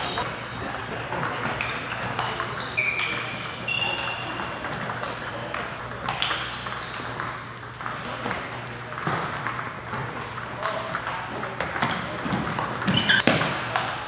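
Table tennis balls clicking off paddles and tables, scattered knocks from several games at once, with a denser, louder run of hits near the end as a rally gets going, over background chatter in a large hall.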